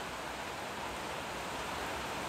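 Steady, even hiss of background noise with no distinct events.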